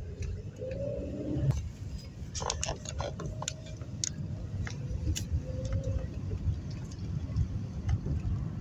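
Steady low road and engine rumble heard from inside a moving car's cabin, with scattered light ticks now and then.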